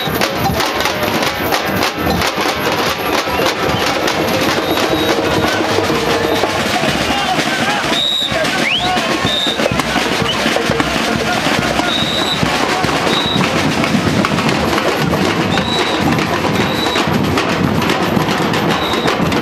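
Carnival percussion group drumming a dense, continuous rhythm, with short high whistle blasts cutting in about halfway through and several more times near the end.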